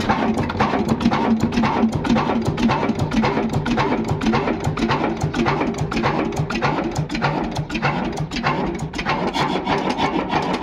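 Old 'Modern' stationary diesel engine with a large belt-driven flywheel, running steadily: an even, dense chugging with a rapid clatter of sharp mechanical clicks.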